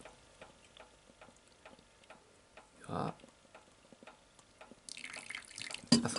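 Cherry juice being added a little at a time to a bowl of cornstarch slurry: faint, evenly spaced drips, a short trickle of liquid near the end, and a brief louder sound about halfway through.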